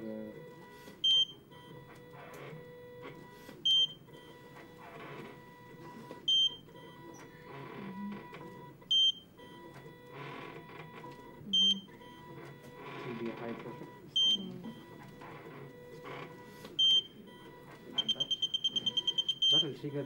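Prototype ventilator giving a short high beep once about every two and a half seconds, about 24 a minute, in time with its set breathing rate. About 18 seconds in it breaks into rapid continuous beeping: its high-pressure alarm, triggered by a simulated stiff, non-compliant lung.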